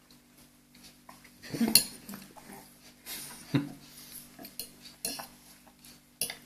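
Metal fork clinking and scraping on a plate as diced zucchini is scooped up, in a few sharp clinks, the loudest about two seconds in.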